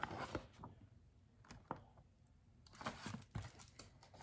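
Quiet paper rustle and a few soft taps from a hardcover picture book being handled, with a page being turned near the end.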